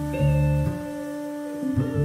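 Live jazz band playing an instrumental jam: held keyboard and guitar chords ring on while the bass line drops out for about a second in the middle and then comes back.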